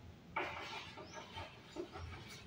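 Chalk scraping on a blackboard as a word is written: a few short, faint strokes, starting suddenly about a third of a second in.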